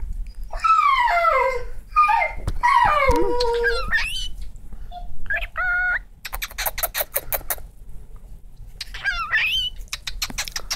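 Pet cockatiel chattering and whistling: wavering, falling warbled calls for the first few seconds, then a short call, a quick run of clicks, and a rising warbled whistle near the end.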